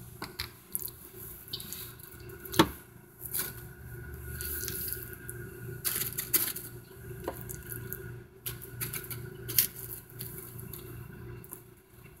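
Scattered small clicks and soft knocks of a spoon scooping refried beans and tapping them onto a plate of tortilla chips, the loudest about two and a half seconds in, over a low steady hum.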